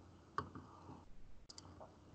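A few soft computer mouse clicks: one sharp click just under half a second in, then a small cluster of fainter clicks about a second later.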